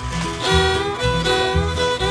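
Background music led by a fiddle, with a steady beat of about two pulses a second.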